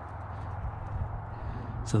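Faint footsteps walking along a path of woven weed-control fabric, over a low steady rumble.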